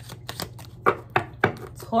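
A deck of cards being shuffled by hand: light card clicks, then three sharp card slaps in quick succession in the second half.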